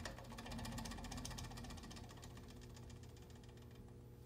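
Small motor shaking a tabletop model steel frame, running down with a faint, rapid mechanical rattle and low hum that fade away over about three seconds as the frame's resonant swaying dies out with no damper to dissipate the energy.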